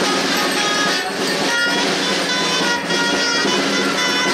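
Live folk music for dancing a Christmas carol (villancico): a melody in long held notes over a steady accompaniment, with occasional sharp percussion hits.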